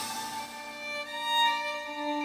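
Quiet violin music playing slow, held notes.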